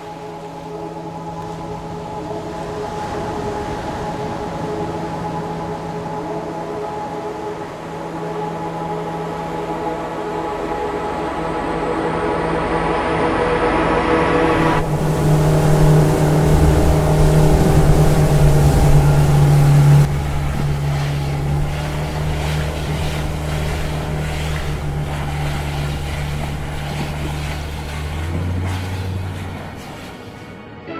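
Motorboat engine running steadily and growing louder, with rushing, churning water added from about halfway through, loudest for a few seconds after that.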